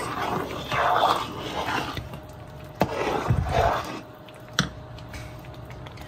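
Metal spoon stirring thick sweet pongal in a pot: soft, wet squelching strokes, with two sharp clicks of the spoon against the pot, one near the middle and one a little later.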